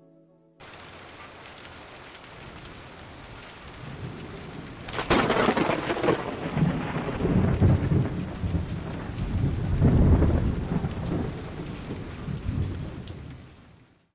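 Steady rain starts abruptly about half a second in. About five seconds in a sharp thunderclap breaks, followed by long rumbling thunder that swells again around ten seconds and fades out at the end.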